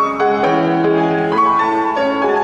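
A grand piano played solo: a Brazilian tango, with held chords under a melody moving from note to note.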